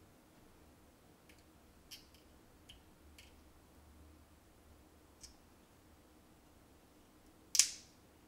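Faint, scattered clicks of a small metal screwdriver tip working against the opened Apple AirTag's circuit board and speaker, with one louder, sharp scrape near the end as it pries at the speaker.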